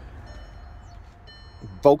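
A pause in a man's talk, filled with a low steady background rumble and two short spells of faint high steady tones: the car's warning chime, sounding because the ignition is on. The man starts speaking again near the end.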